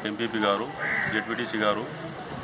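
A man speaking, with a short harsh call in the background about a second in.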